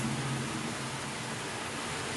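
Steady, even background hiss with no distinct events, the noise floor of a home voice recording; a faint low hum dies away in the first half second.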